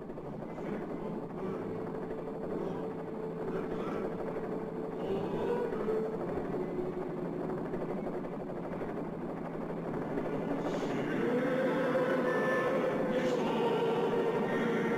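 A steady mechanical drone with a faint wavering hum in it, growing louder over the last few seconds.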